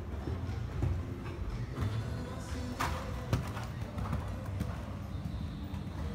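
Dull hoofbeats of a horse cantering on the sand footing of an indoor riding arena.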